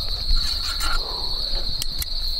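Crickets chirping in a steady high-pitched chorus, with one short click near the end.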